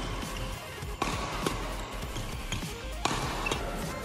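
Several sharp hits of a badminton racket on a shuttlecock as shots are blocked, irregularly spaced and the loudest about a second and three seconds in, over steady background music.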